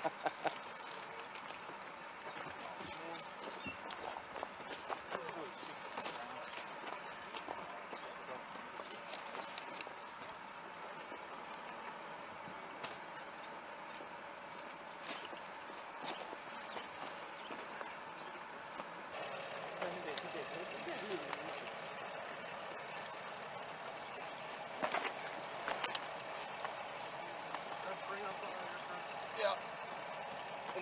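Faint, indistinct men's voices over a steady outdoor hiss, with scattered short clicks and knocks from soldiers moving and handling their gear.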